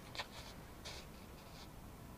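Domestic cat grooming: its tongue licking its paw and fur in a handful of short, faint, scratchy strokes, the loudest just after the start.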